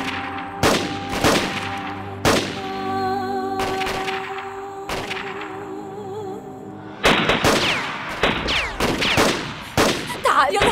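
Single gunshots cracking every second or so over dramatic background music with long held notes, then from about seven seconds in a dense burst of rapid automatic gunfire.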